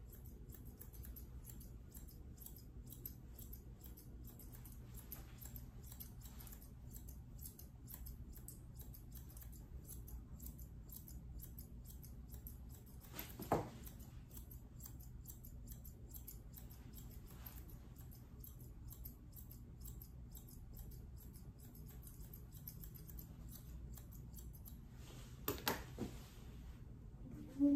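Grooming shears cutting a toy poodle puppy's coat in quick, repeated snips. There is one sharper, louder click about halfway through and another near the end.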